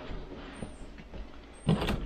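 Hinged under-bed storage lid of a travel trailer being lifted open under its bedding, with faint rustling and a short clunk near the end.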